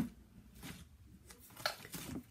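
Quiet handling noise at a table: faint rustling with a few light clicks, one about half a second in and a small cluster near the end.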